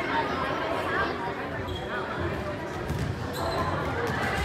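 Spectators and players talking in an echoing gymnasium between rallies, with a few low thuds of a volleyball bounced on the hardwood court.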